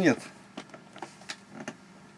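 A spoken word, then several light, sharp clicks and taps at irregular intervals: handling noise from someone moving about and handling objects close to the microphone.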